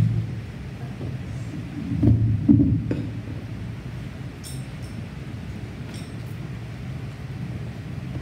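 Microphone handling noise: a steady low rumble with a few louder muffled bumps about two to three seconds in, as a microphone is being put on.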